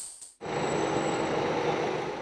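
The tail of a short percussive news jingle hit. About half a second in, it gives way to a steady outdoor road ambience with vehicle engine noise.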